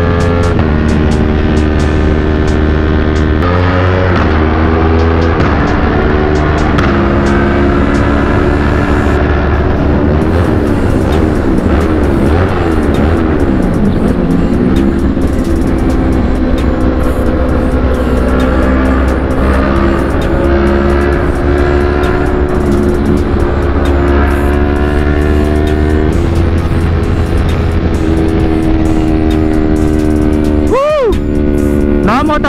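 Yamaha R3's parallel-twin engine and exhaust running at speed on the road, heard from onboard and mixed with background music. Around the middle the engine pitch dips and then rises again.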